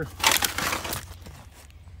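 Trailer tarp and plastic debris rustling and crinkling as a rope is shoved up under the tarp's edge, loud for just under a second, then fainter.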